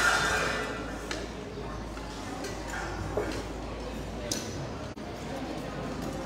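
Chatter of many voices in a large echoing hall, with a few light clinks of serving spoons and ladles against steel pots and alms bowls.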